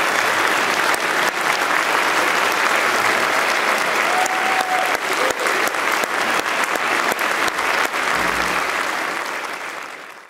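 Audience applauding steadily, a dense patter of many hands clapping.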